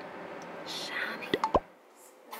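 Steady low hum of a car's interior on the road, with two quick pops with a sliding pitch about a second and a half in. The hum then cuts off abruptly.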